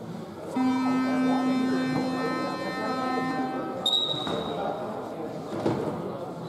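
Sports hall scoreboard horn sounding one long buzzing blast of about three seconds while the teams are in their bench huddles, the signal that the time-out is over. A short, sharp high whistle blast follows just after the horn stops.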